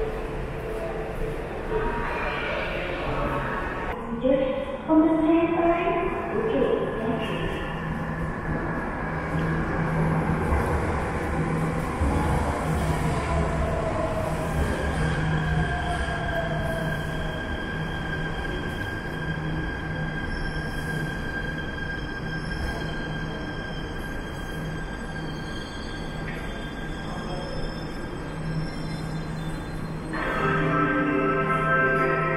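MRT Jakarta electric train pulling into an underground station platform. A steady low rumble runs under it, and the motor whine glides down in pitch as the train slows to a stop.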